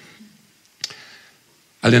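A single sharp click a little under a second into a pause in the talk, against quiet room tone; the man's voice resumes near the end.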